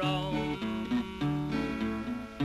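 Slide guitar played flat across the lap, Hawaiian style: plucked, held notes over a bass line that alternates between two low notes.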